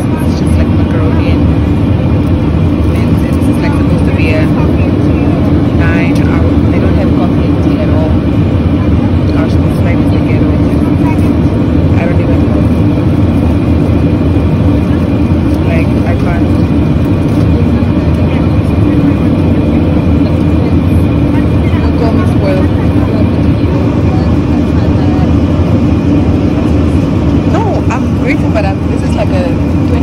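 Steady, loud airliner cabin noise: the low, even sound of the jet engines and air rushing past the fuselage, with passengers' voices faintly in the background.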